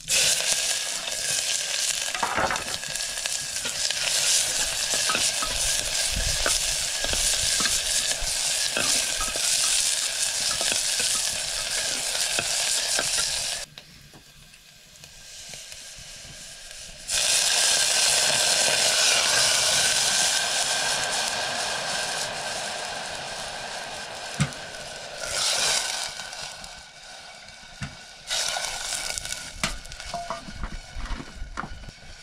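Chopped onions sizzling loudly as they fry in hot oil in an aluminium pot over a wood fire, with an occasional knock against the pot. The sizzling drops away abruptly for about three seconds midway, then returns and gradually dies down over the last several seconds.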